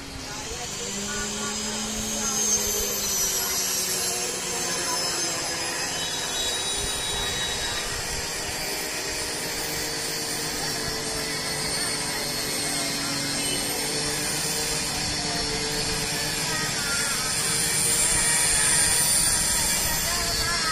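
Steady mixed din of a street procession: voices with long, drawn-out held tones running over them.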